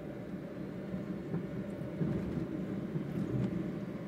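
Car running along a road, heard from inside the cabin: a steady low rumble of engine and tyre noise.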